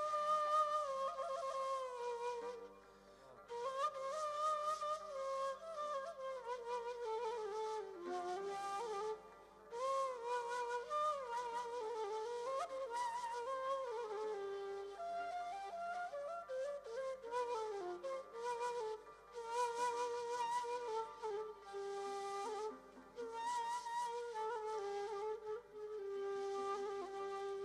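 Solo ney, the end-blown reed flute, playing a free, ornamented improvised melody with a breathy tone. It pauses briefly a few times, about three seconds in, near nine seconds and near twenty-two seconds.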